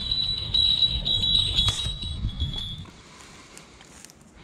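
A falconry bell on a Harris hawk ringing in a high, steady tone as the hawk lands, with a low wind rumble on the microphone; both stop about three seconds in.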